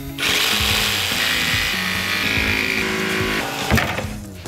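HART 20V brushless cordless jigsaw cutting through plywood at high speed for a rough cut. The saw runs steadily for about three seconds, then stops shortly before the end.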